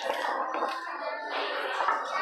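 Indistinct background music and voices in a small room, picked up thinly by a phone microphone.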